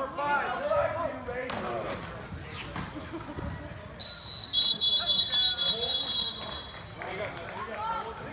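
Referee's pea whistle blown once about halfway through: a shrill, warbling blast of roughly two to three seconds that stops the play. Before it, players and spectators shout in the hall.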